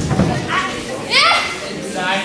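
Children in a wrestling crowd shouting and calling out in high voices, with one loud cry that rises and falls about a second in.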